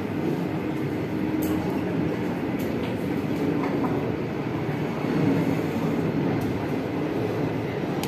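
Steady low rumble of room background noise, with a few faint clicks.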